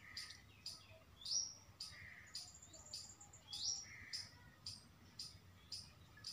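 Faint wild bird calls: a rising whistled note, heard twice, each followed by a lower note, with short high chirps throughout.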